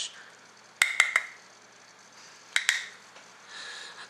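Light plastic clicks and taps from a makeup brush and a mineral-powder jar lid being handled: three quick clicks about a second in and two more a little later, with a soft hiss near the end.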